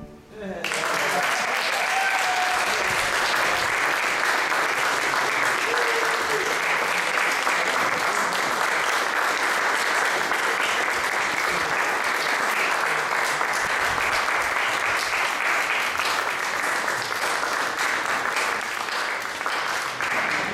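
Audience applauding, breaking out about a second in and holding steady.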